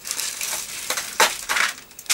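Plastic craft packets being handled and crinkling, with sharper crackles about a second in.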